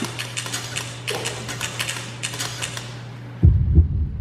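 Typewriter keys clacking in quick, irregular runs over a steady low hum. About three and a half seconds in, the typing stops and a loud, deep double thud comes in.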